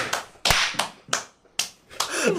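Sharp slap-like cracks, the loudest about half a second in and followed by a short hiss, then two lighter ones about a second and a second and a half in.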